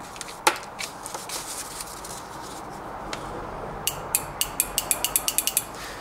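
Toyota automatic transmission solenoid clicking as battery leads are tapped on and off its terminals. There is a sharp click about half a second in, then a quick run of about a dozen clicks near the end that come faster and faster. The clicking is the solenoid valve moving, a sign that the solenoid works.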